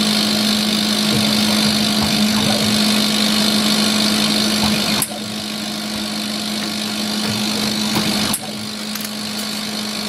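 CO2 laser cutter running a slow, low-power engraving pass: a steady hum over a hiss from the machine. The sound drops abruptly about five seconds in and again a little past eight seconds.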